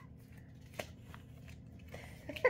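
Faint handling rustles with a couple of small clicks, the clearest about a second in, over a low steady room hum.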